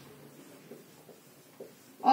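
Marker pen writing on a whiteboard: faint strokes with a few light taps, about three, as the tip meets the board.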